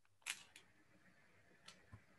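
Near silence broken by a few short, sharp clicks: one about a quarter second in, a weaker one just after, and another near the end.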